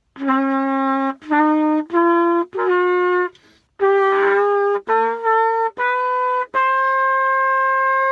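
Trumpet playing an ascending D major scale, D, E, F sharp, G, A, B, C sharp, D: eight separate held notes with short breaks between them, the top D held longest. The tone is a little raspy, which the player puts down to a tired jaw.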